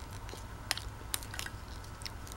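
A few sharp clicks of a metal spoon against a bowl as soft semolina porridge is scooped up, over a steady low hum.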